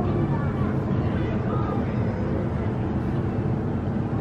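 Outdoor crowd ambience: indistinct chatter of people walking nearby over a steady low rumble.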